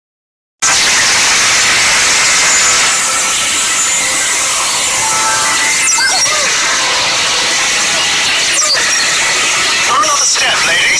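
Loud, steady rushing hiss with a high squeal over it, a dramatic sound effect laid over music, starting just after the opening half-second of silence. Two brief vocal sounds come through it, about six and about nine seconds in.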